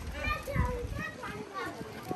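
Passers-by talking, with children's high voices among them.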